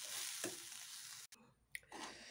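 Faint sizzling of jackfruit-rind and grated-coconut thoran frying in an aluminium pressure-cooker pan, with a spoon stirring through it. The sound cuts off suddenly about two-thirds of the way in, and a single click comes near the end.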